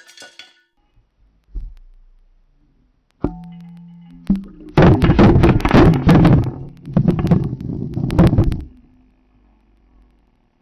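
Rocks tipped into a bowl of water, heard from a camera sitting underwater in the bowl: a sharp knock with a brief ring about three seconds in, then about four seconds of dense clattering as the rocks strike the camera housing and settle on the bottom.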